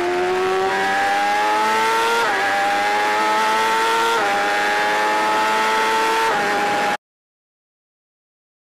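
BMW S1000RR superbike's inline-four engine at full throttle under hard acceleration, with wind rush, its pitch rising through the gears with three quick upshifts, about two seconds apart. The sound cuts off abruptly about seven seconds in.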